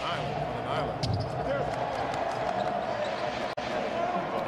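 Basketball arena sound during live play: steady crowd hubbub, sneakers squeaking on the hardwood court and a ball bouncing. The sound cuts out for an instant near the end.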